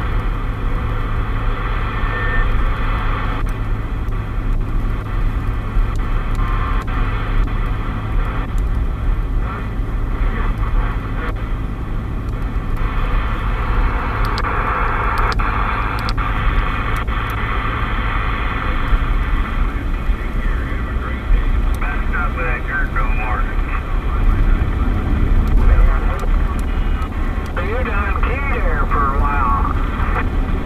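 President Lincoln II+ CB/10-metre transceiver playing band noise and static through its speaker while tuned across the 27 MHz band in sideband mode. Faint, distorted voices of distant stations come through, most clearly in the last several seconds. The low rumble of the moving car runs underneath.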